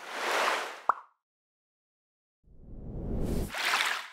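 Animated logo sound effects: a whoosh swells and fades in the first second, ending in a short rising blip, then after a silent pause a second, deeper rushing swoosh builds for about a second and a half.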